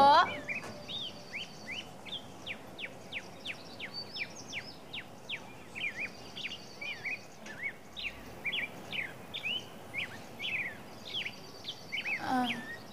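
Birds chirping: a steady run of short, falling chirps, about two or three a second, over a faint, even outdoor background.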